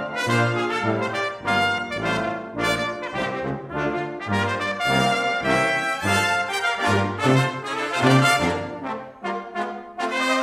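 Brass ensemble of trumpets, French horn, trombone and tuba playing, the low brass moving in separate bass notes, with a mixed choir singing.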